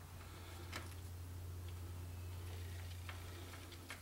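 Faint, irregular metal clicks, about four, as a bolt is fitted by hand into the NP208 transfer case, over a steady low hum.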